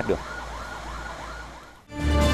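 Siren on a military ARS-14 disinfection truck in fast yelp mode, its pitch sweeping up and down about three to four times a second over a low engine rumble. It fades and cuts off just before the end.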